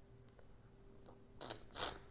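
Near silence, then two short mouth noises from a man about a second and a half in.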